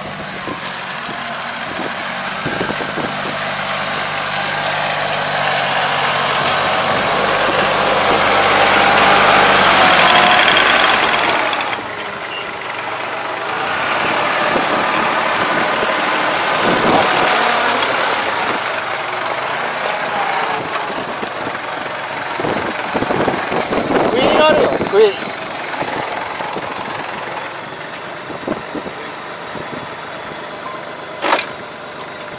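Iseki tractor's diesel engine running while it drives a Kobashi levee-coating machine through the soil, growing louder over the first ten seconds. The level drops suddenly about twelve seconds in, and the engine and machine noise then runs on unevenly, with a few short sharper sounds near the end.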